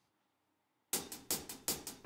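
Silence for about a second, then a drum count-in: four sharp, evenly spaced ticks, about three a second, setting the tempo for the song.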